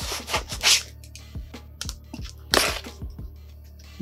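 Background music with a steady beat, over packing tape and cardboard being slit and torn open with a knife: two loud rasping tears, one just after the start and one a little past halfway.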